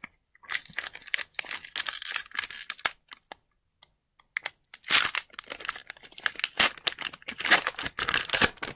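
Foil wrapper of an Upper Deck hockey card pack crinkling and tearing as it is handled and opened. The crackles come in short spells, with a quiet gap of about a second near the middle.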